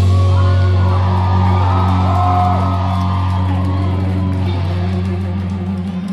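A rock band's last chord held and ringing out: a steady low bass note with guitar above it, fading slowly, then cut off at the end. Audience whoops and shouts rise over it in the first few seconds.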